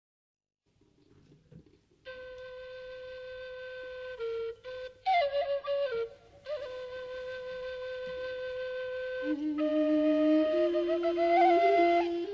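A solo Thai bamboo flute (khlui) opens a Mon-style classical melody, starting about two seconds in with long held notes and sliding ornaments. A second, lower wind line joins about nine seconds in, and the music grows gradually louder.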